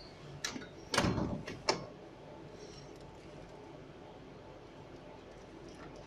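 Plastic clicks and a brief scrape from a Nespresso capsule machine's lever and capsule slot being worked by hand, about a second in, as a refilled, foil-covered capsule is fitted that doesn't want to go in.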